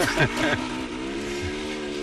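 Dirt bike engine running with a steady tone that rises slightly in pitch.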